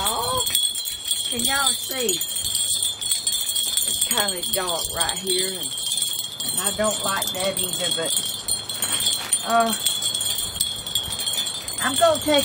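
Wind chimes ringing steadily in the breeze, a constant high shimmer of overlapping tones.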